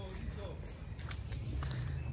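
Footsteps on sandy dirt ground while walking, with a few light clicks among them.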